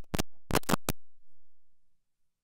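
A quick run of about five sharp clicks within the first second, then the sound fades away.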